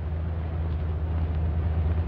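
Steady low hum with an even hiss, the background noise of an old film soundtrack.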